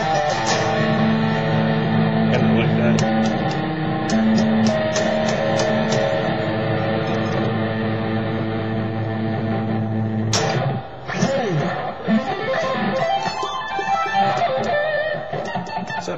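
Electric guitar played unaccompanied: a chord is picked repeatedly and rings for about ten seconds. Then a sharp new attack and single-note lead lines with string bends.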